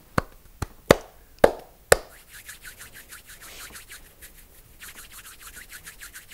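Five sharp taps or clicks within about two seconds, then a fast, fainter run of light ticks.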